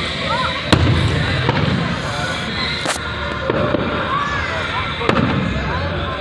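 Fireworks going off, with sharp bangs: the loudest about a second in and another about five seconds in.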